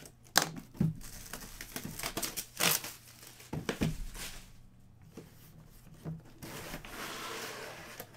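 A cardboard box being handled and opened, with crumpled kraft packing paper inside crinkling and rustling. There are several sharp snaps in the first three seconds, then a softer, steadier rustle near the end.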